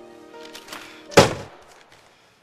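Background music with held notes; about a second in, one loud heavy thud as a door is slammed shut. The music stops shortly after.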